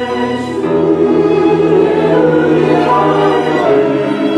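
Church choir singing a hymn in parts, with bowed strings in the accompaniment. The voices swell louder about a second in and stay full.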